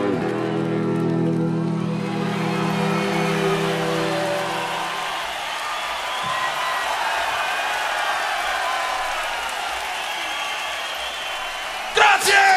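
A live rock band's closing chord, held and dying away about five seconds in, then a concert crowd cheering and applauding.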